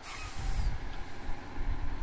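Low rumble of a Holmer Terra Variant 600 self-propelled digestate applicator as its filling arm swings back after the tank has been filled, with a short hiss at the very start.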